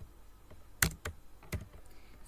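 Computer keyboard keys pressed, a few separate clicks: the loudest a bit under a second in, a lighter one about half a second later.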